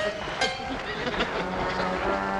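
A dense, noisy stretch with a sharp click about half a second in, then a low brass note from the sitcom's music score comes in about halfway through and holds steady.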